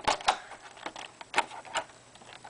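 A handful of short, sharp clicks and taps at irregular spacing, two close together at the start and a louder one about halfway through: hands handling hard plastic phone-case pieces.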